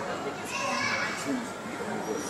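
Indistinct background voices of people talking around a terminal's shops, with children's voices among them.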